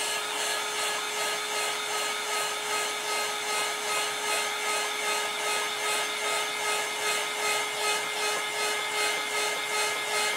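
Handheld electric heat gun blowing steadily, a fan whine over a rushing hiss, the hiss swelling and fading a little faster than once a second as it is swept back and forth. It is reheating wet epoxy on a turning tumbler to make the glitter flow together.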